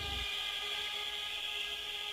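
A pause in the recorded music: a faint, steady hiss with several thin, high whining tones from the recording's own background noise. The last of the bass dies away right at the start.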